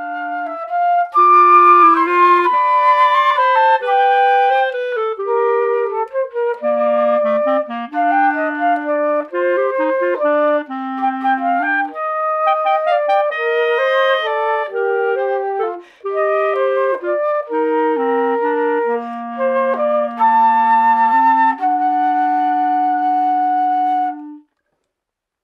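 Concert flute and clarinet playing a duet: two melodic lines, the clarinet below the flute, moving through a tune and closing on a long held note together.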